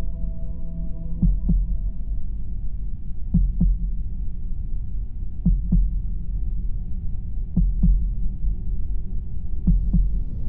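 Slow heartbeat sound effect, a double thump repeating about every two seconds, over a low droning hum with a few faint held tones.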